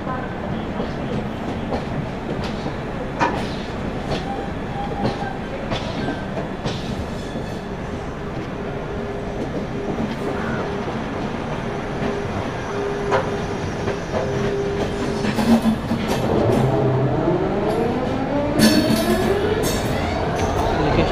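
Farakka Express coaches rolling out of Lucknow station, heard from an open coach door: a steady rumble of wheels on rail with sharp clacks as they cross joints and points. Near the end, metallic squeals rise and fall over the rumble.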